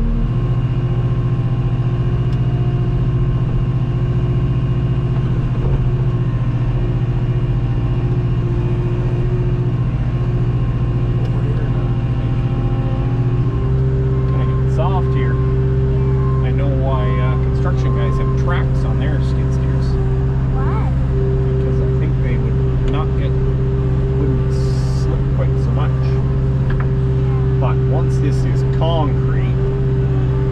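Skid steer engine running steadily, heard from inside the cab. About halfway through, the engine note shifts to a different steady pitch.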